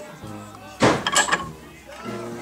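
Background music, with a quick run of metallic clinks about a second in from pliers and a nail being worked at a steel bench vise.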